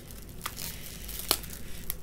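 Plastic wrap stretched over a face crinkling faintly as it shifts, with a few sharp ticks, the strongest just past halfway.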